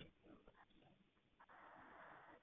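Near silence, with a faint hiss in the last half second.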